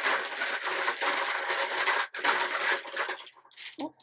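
A hand rummaging through folded paper slips in a cloth-lined basket: a dense rustling that runs for about two seconds, breaks off briefly, and returns for about another second.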